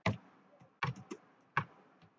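Typing on a computer keyboard: a handful of sharp key clicks in uneven clusters with short pauses between them.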